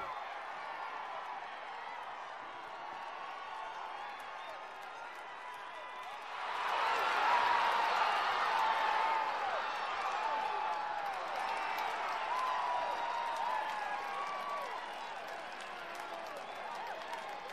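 Boys' voices shouting and cheering at a goal, breaking out suddenly about six seconds in and slowly tapering off. Before that, only faint, distant voices calling on the pitch.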